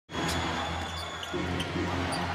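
Basketball being dribbled on a hardwood court over steady arena crowd noise and music.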